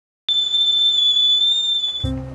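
Stovetop kettle whistling: one steady, high, slightly wavering whistle that starts suddenly a moment in.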